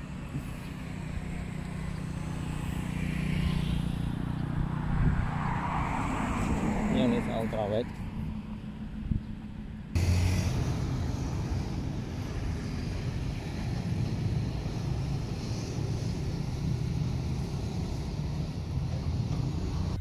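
Road traffic picked up by a smartphone's microphone while walking beside a street, with vehicles going by. About halfway through, the sound cuts abruptly to the steadier noise of a busy street with motorbikes and cars.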